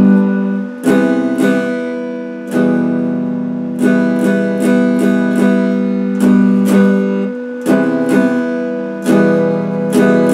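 Electric guitar strumming a slow sequence of easy open chords centred on E minor, each chord struck sharply and left to ring before the next.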